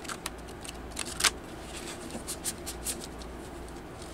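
A deck of Starseed Oracle cards being shuffled by hand: a string of sharp card clicks and snaps, the loudest about a second in, thinning out toward the end.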